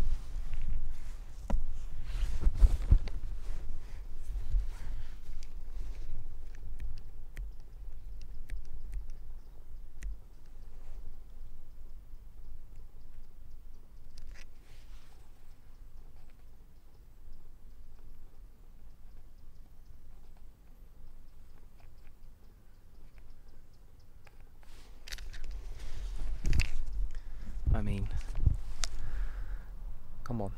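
Low rumble of wind and handling noise on the microphone, with scattered faint clicks and rustles. It grows louder near the end, with irregular breathy, close-up sounds.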